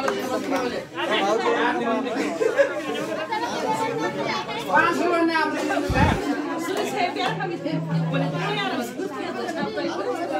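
A crowd of people talking over one another in a gathering, many voices at once with no single speaker standing out. A single low thump sounds about six seconds in.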